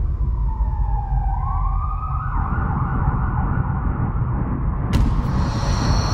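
Emergency-vehicle siren sound effect: a wailing tone that dips, then rises and holds, over a steady low rumble. A sharp click comes about five seconds in, followed by a high steady beep.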